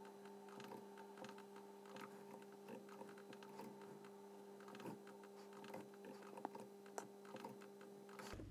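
Near silence with faint, scattered clicks of a computer mouse and keyboard as points are placed along a curve, over a steady low hum.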